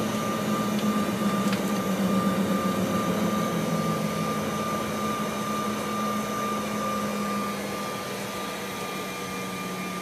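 Cabin noise inside a Canadair Regional Jet taxiing after landing: the idling turbofan engines give a steady whine and low hum over the air-conditioning hiss. The low hum fades and the noise eases slightly in the last couple of seconds.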